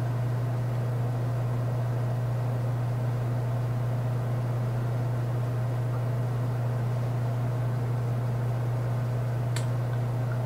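Steady low hum with a faint hiss over it: room tone, with one faint click near the end.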